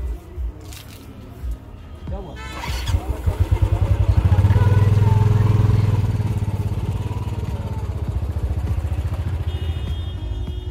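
Motorcycle engine running close by, its exhaust pulsing; it comes in about two and a half seconds in, is loudest around five seconds, then runs on steadily.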